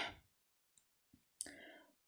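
Near silence: faint room tone, with two tiny clicks near the middle and a brief soft noise about a second and a half in.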